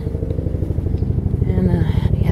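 An engine running steadily with a fast, even low pulse.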